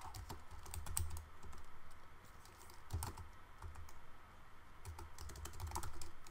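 Computer keyboard being typed on: light, irregular key clicks in short bursts with pauses between, clustered near the start, about halfway through and near the end.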